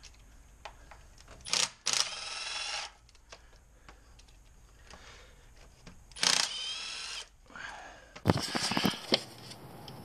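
Cordless Milwaukee 3/8-inch impact wrench spinning out valve cover bolts on a Ford 5.4 3V engine: a brief blip, then two bursts of about a second each. Near the end comes a short run of clicks and rattles.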